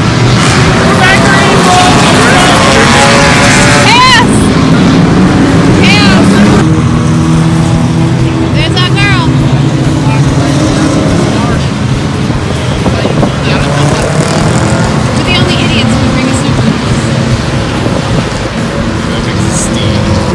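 Race car engines running at speed down the straight, loud throughout, with the level dropping a little about six and a half seconds in as the cars draw away. Spectators' voices sound over them.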